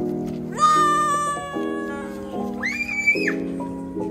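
Background music with steady held notes, over a child's long, drawn-out shout of "run" starting about half a second in, then a shorter high-pitched squeal near the end.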